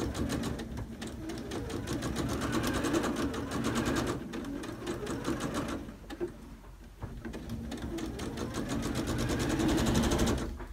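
Electric sewing machine stitching a curved quilt seam, its needle running in a fast, even clatter. It stops briefly a little past the middle, then starts again.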